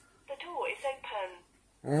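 Hikvision intercom door station's recorded voice prompt saying "The door is open," confirming that the keypad code was accepted and the lock released. It lasts about a second.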